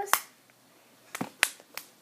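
Sharp slapping pops of a hand punching a ball of homemade glue-and-detergent slime: one right at the start, then three more in quick succession a little over a second in.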